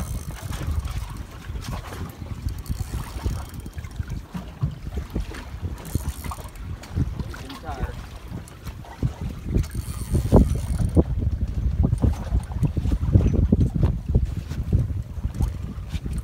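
Wind buffeting the microphone on an open boat: an uneven, gusty low rumble that grows stronger about two-thirds of the way through.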